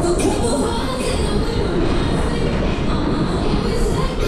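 Mack Berg- und Talbahn ride cars running at speed around their hilly circular track, heard from on board: a loud, steady rumble of the car wheels on the rails.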